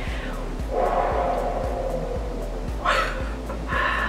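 Quiet instrumental background music with a steady low pulse.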